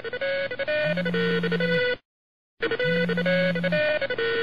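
A phone's musical ringtone playing a short melody that stops briefly about two seconds in and then repeats: an incoming call ringing.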